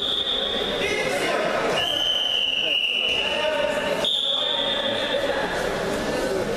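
Three long, high, steady whistles, the middle one sinking slightly in pitch, over a hall full of spectators' voices shouting and talking during a wrestling bout.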